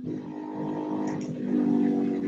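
A motor engine running with a steady low hum. It cuts in suddenly and grows louder toward the end.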